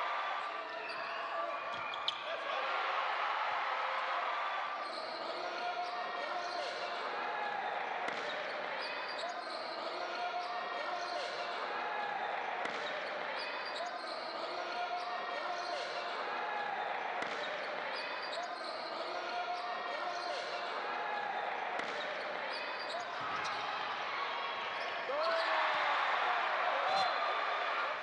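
Live basketball game sound from the court: the ball bouncing and players' shoes squeaking in short chirps on the hardwood, with voices carrying through the arena. A sharp knock comes about two seconds in, and the sound swells louder near the end.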